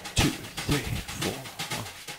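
A drummer vocalising a rhythm under his breath: a string of short, soft, low mouth sounds with light clicks between them.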